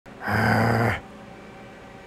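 A man's single drawn-out groan at a steady low pitch, lasting under a second, followed by a faint steady background hum.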